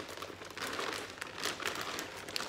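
Plastic packet of grated cheese crinkling in irregular bursts as it is tipped and shaken over a baking dish.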